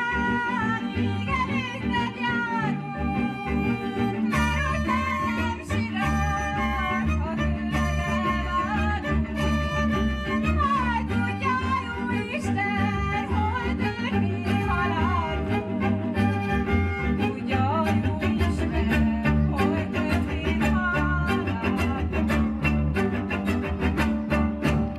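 Folk string band music: a fiddle plays a sliding, ornamented melody over a steady, pulsing double-bass accompaniment.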